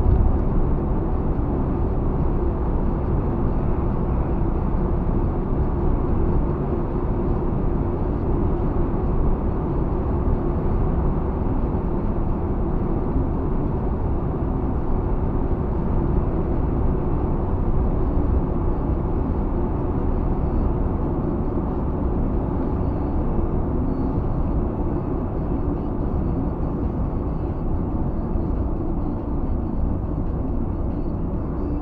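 Steady low rumble of a car's tyres and engine heard from inside the cabin while driving along at an even speed, picked up by a dashcam microphone.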